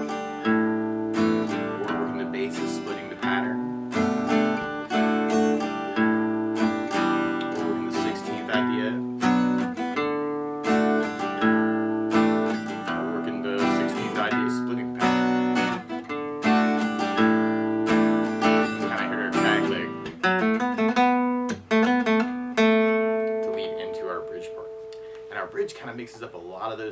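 Acoustic guitar strummed through the chorus's chord changes (B minor, D, A, E minor) in a bass-note, down, down-up pattern. Near the end a chord is left to ring.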